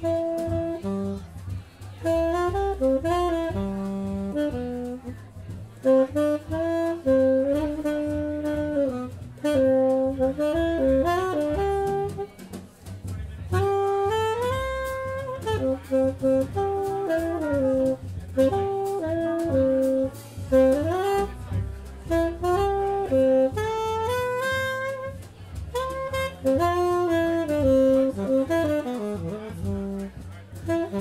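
A live jazz quartet playing a tune: tenor saxophone and trumpet carry the melody over walking string bass and drums.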